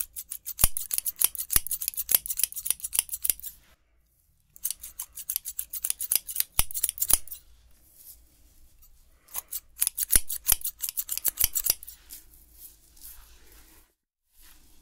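Hairdressing scissors snipping in rapid runs, several snips a second, in three bursts separated by short pauses, followed by faint rustling near the end.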